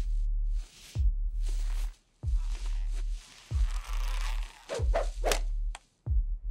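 Film soundtrack with a heavy electronic bass beat, a deep held bass struck by a hard hit about every second. Whoosh and swish effects sound between the hits and bunch together about four to five seconds in, along with the on-screen comb tugging at the hair.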